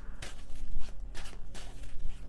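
Tarot cards handled and shuffled by hand: a run of quick, irregular papery rustles and clicks.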